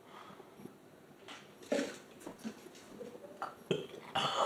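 A few short throaty vocal sounds and breaths from a person, separate and brief, the loudest a little under halfway through.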